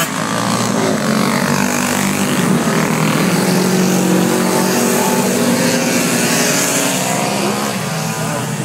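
A pack of racing motorcycles passing one after another at speed, the engine note rising and falling as each bike goes by.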